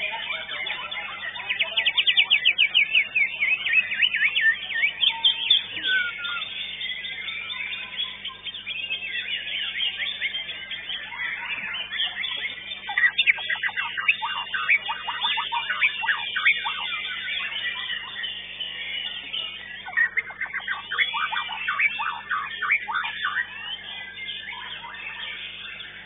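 Caged white-rumped shama (murai batu) singing: a loud, varied song of fast trills and rapid repeated notes, coming in bursts with short pauses between them.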